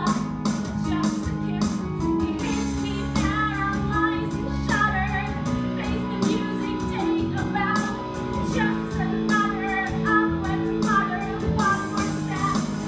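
A female voice singing a solo musical-theatre song over an instrumental accompaniment with a steady beat.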